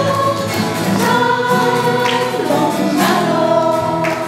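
A group of voices singing a Christian song in unison, accompanied by strummed acoustic guitars.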